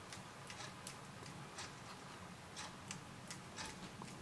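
Paintbrush being tapped to flick splatters of pearl watercolour onto a card: a run of light, irregular ticks, about two or three a second.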